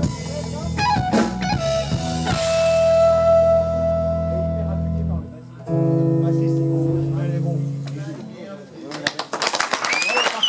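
Live rock band with electric guitar, bass and drum kit hitting a few chords and then holding two long chords that ring out to close the song. Near the end the audience breaks into applause and cheering with a whistle.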